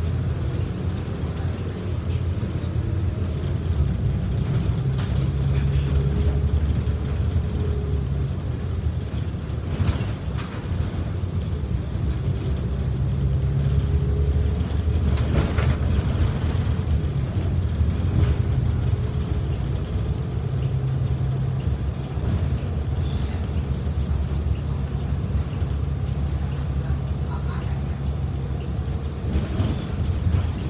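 Inside a moving transit bus: steady low engine and road rumble with a faint whine that rises and falls as the bus speeds up and slows. Two brief knocks or rattles, about ten and fifteen seconds in.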